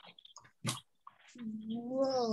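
Soft clicks and taps, then from about a second and a half in one drawn-out voiced call that rises slightly and then falls away.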